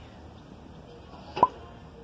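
A single short, sharp pop about one and a half seconds in, an edited-in sound effect marking an on-screen arrow, over faint outdoor background hiss.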